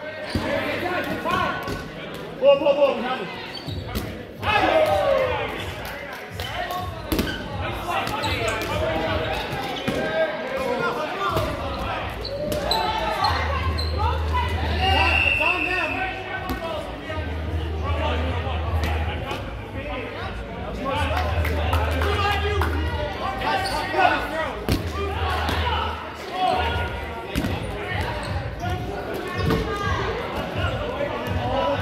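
Rubber dodgeballs being thrown and smacking off the wooden gym floor and walls again and again, amid players' shouts and chatter echoing in a large hall.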